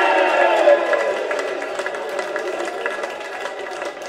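Football crowd shouting together in a sudden loud outburst that fades over about two seconds into chatter with scattered clapping.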